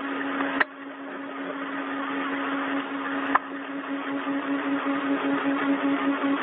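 Hiss of an open space-to-ground radio channel, slowly swelling, with a steady low hum under it and two short clicks, about half a second in and about three and a half seconds in.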